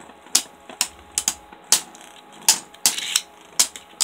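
Two Beyblade Burst spinning tops clacking against each other in a plastic stadium, about eight sharp clicks at uneven spacing over a faint spinning hum. The tops are losing stamina and slowing down.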